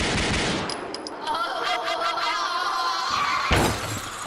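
Sudden burst of rapid gunfire, a sound-effect drop, with a louder bang near the end.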